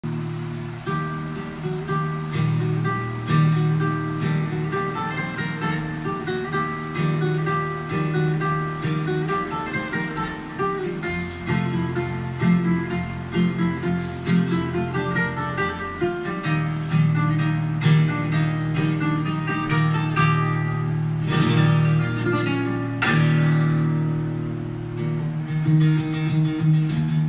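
Flamenco guitar music: an acoustic guitar plays quick plucked runs over a steady bass, with bursts of fast strummed chords a little before the end.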